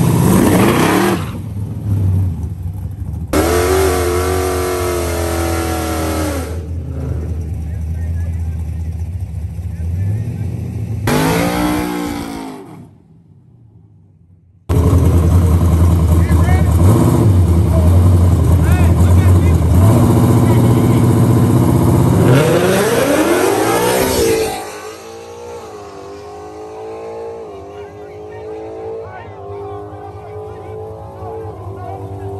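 Drag-racing cars' engines revving hard at the start line, the pitch sweeping up and down, with a sharp drop in sound for about two seconds near the middle. About 25 seconds in the sound falls away, and an engine note climbs in repeated steps as a car accelerates off through its gears.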